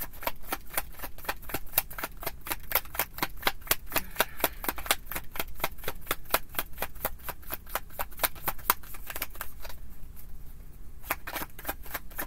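Tarot cards being shuffled overhand by hand: a rapid, even run of crisp card slaps, about five or six a second, with a brief pause about ten seconds in.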